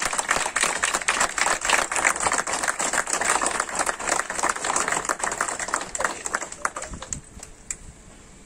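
A small crowd applauding: many hands clapping in a dense run that thins out and stops about six to seven seconds in.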